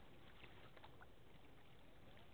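Near silence: faint steady outdoor background noise with a few faint short ticks.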